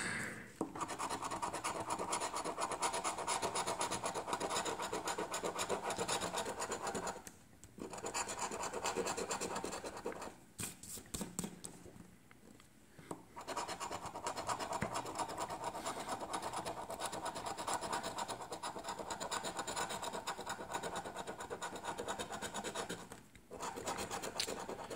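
A large coin scraping the latex coating off a scratch-off lottery ticket in long runs of rapid rasping strokes. The scraping stops briefly about seven seconds in and for about three seconds around the middle, then goes on.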